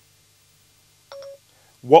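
A single short electronic beep about a second in: the iPhone 4S's Siri chime, signalling that it is ready to listen.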